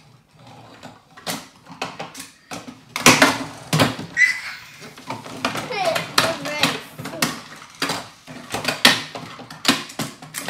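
Plastic toy cars pressed down and pushed along a wooden tabletop: a quick run of sharp clicks and knocks from their push-down launch mechanisms and plastic hitting wood.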